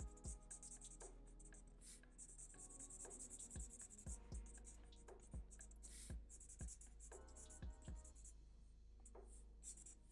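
Faint scratching of a felt-tip marker on paper, in repeated short strokes, as dark areas of a drawing are filled in.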